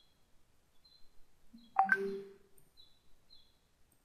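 Faint short high chirps, recurring about twice a second, typical of a small bird calling, with one brief louder sound about two seconds in.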